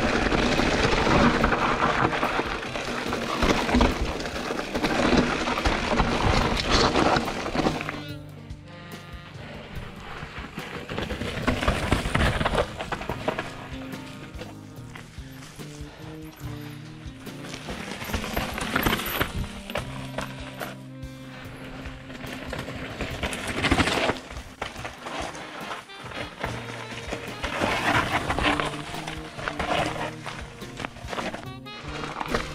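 Background music with a bass line stepping between notes. For about the first eight seconds, and in a few shorter swells later, a loud rushing noise rises over it.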